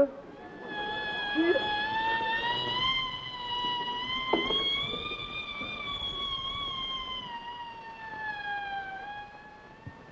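A single long, high-pitched wailing tone lasting about nine seconds, rising slightly and then falling away, with a sharp knock about four seconds in.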